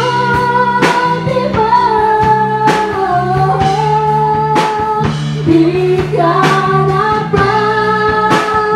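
Live worship band playing a slow song: a woman sings lead in long held notes over drum kit, electric bass and electric guitar, the drums striking about once a second.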